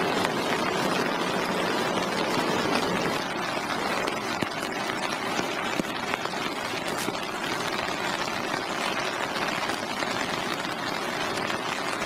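Steady rain falling, an even hiss that holds throughout.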